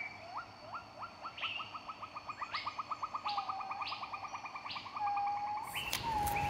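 A bird calling: a few rising notes that quicken into a fast, even trill of about ten notes a second, with higher notes layered over it.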